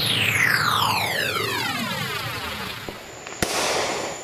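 Firework sound effect: a whistle falling steadily in pitch for about three seconds, then a sharp bang near the end followed by a brief crackling hiss, over background music.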